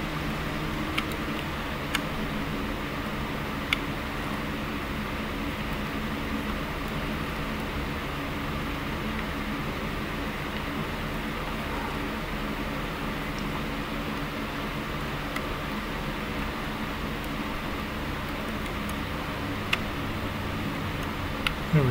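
Steady hum and hiss of a running electric fan, with a few faint clicks as a plastic model truck is handled on a turntable.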